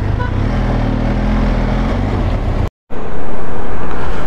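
Road vehicle engine, a low drone that swells and then fades. A brief drop to silence follows, then loud rushing wind noise over the microphone of a moving motorcycle.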